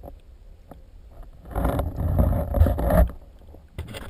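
Muffled underwater water noise picked up through a camera's waterproof housing: a low rumble with scattered clicks, and a loud rushing surge of water from about one and a half to three seconds in.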